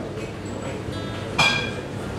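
Low room noise with one sudden, bright ringing clink about one and a half seconds in that dies away within half a second.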